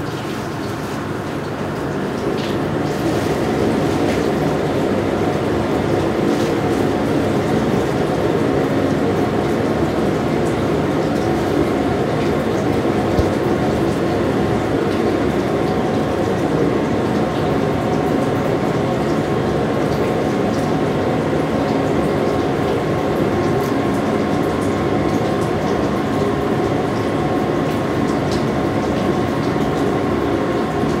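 Steady, loud mechanical drone of the room's air extraction ventilation, with a few steady tones in it and the odd faint click.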